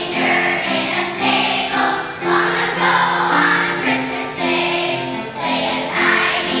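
Choir of second-grade children singing a Christmas song together in held, stepwise phrases.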